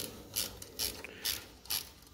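Short ratcheting strokes, about two a second, from hand work on an engine's wiring.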